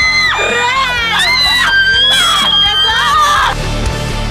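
Loud high-pitched shrieks and yells from a group of young women over background music; the shrieking stops shortly before the end.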